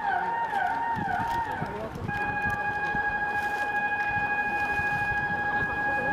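Electronic warning signal of a depot traverser moving a rail car: a falling tone repeating about twice a second, switching about two seconds in to a steady continuous tone.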